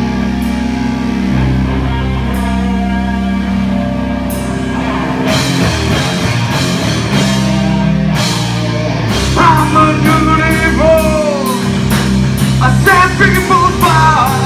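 Live rock band playing loud: electric guitars hold sustained chords under occasional cymbal crashes, then the drums come in fully about five seconds in. A man's singing voice returns over the band around nine seconds in.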